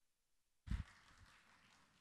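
Silence, then about two-thirds of a second in a microphone comes live with a short low thump, followed by faint steady room hiss.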